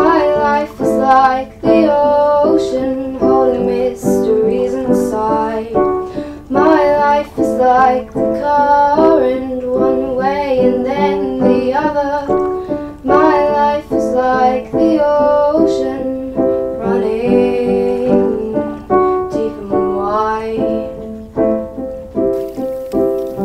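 A song: a woman singing a slow melody over piano accompaniment.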